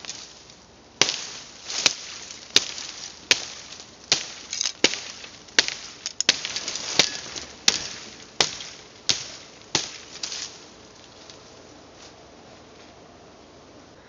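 A 10-inch Gurkha kukri chopping thin (about 1 cm) bamboo stems: about thirteen sharp chops, roughly one every 0.7 s, stopping about ten seconds in. These chops roll and nick the blade's polished edge.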